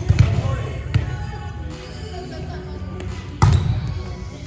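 A volleyball being played in a gymnasium: a few sharp hits of the ball, the loudest about three and a half seconds in. Players' voices and some echo from the hall come through.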